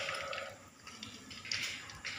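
Hot oil sizzling and crackling in a wok as slices of stuffed bitter gourd fry, with a light click about one and a half seconds in.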